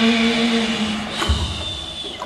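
Live band music during a lull: a held note fades out in the first second, then a single low drum hit comes about halfway through, and the sound thins out toward the end.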